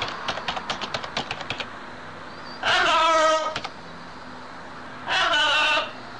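Blue-and-gold macaw giving two loud, harsh squawks, each just under a second long and about two and a half seconds apart. They follow a rapid run of about a dozen sharp clicks in the first second and a half.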